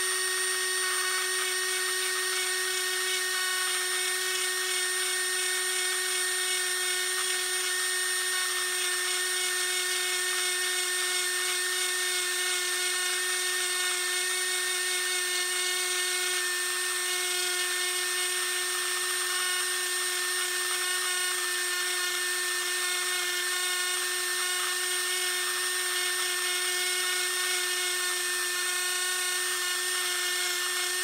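Dremel rotary tool running at high rpm through a flex-shaft handpiece, its inverted-cone bit carving grooves into a Glock 19's polymer frame: a steady high-pitched whine that holds one pitch.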